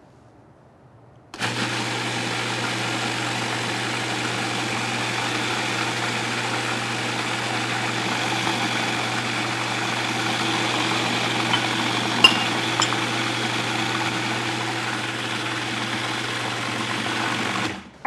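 Food processor motor starting about a second in and running steadily as it purées a thick dip until creamy, then cutting off just before the end. A sharp click about two-thirds of the way through.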